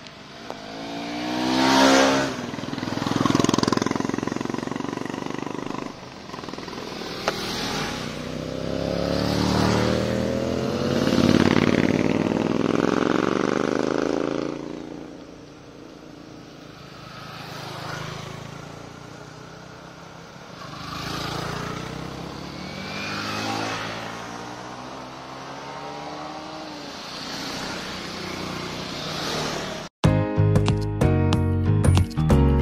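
A group of motorcycles riding past one after another on a road, each engine note rising as it approaches and falling away as it goes by, loudest about two seconds in and again around eleven seconds in.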